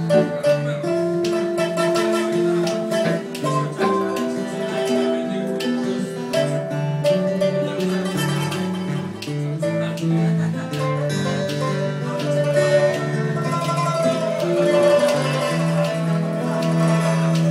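Live blues played by a small band of plucked strings: acoustic guitar, electric guitar, pipa and a keyed zither, with held melody notes stepping over steady chords.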